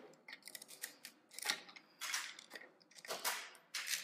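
Lego plates and bricks being pulled apart: a string of sharp plastic clicks and snaps, with louder snaps near the middle and about three seconds in.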